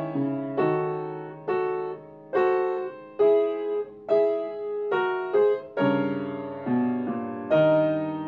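Yamaha upright piano played solo: chords struck about once a second, each ringing and fading before the next, with a fuller, lower chord a little after the middle.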